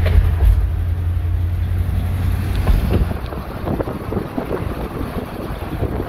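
Road noise inside a 1958 Edsel Citation on the move: a strong low rumble of engine and tyres, with wind on the microphone. About halfway through, the rumble turns rough and uneven as the car rolls onto a steel bridge deck.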